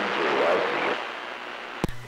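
A distant station's voice coming in over a CB radio through a hiss of static, fading away in the second half. A sharp click follows near the end as the transmission changes over.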